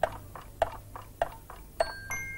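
A clock ticking, about three sharp ticks a second, as its hands move on from half past twelve to one o'clock. Near the end, bell-like chime notes begin to ring.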